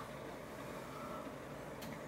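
Faint steady background hiss of room tone, with no distinct events.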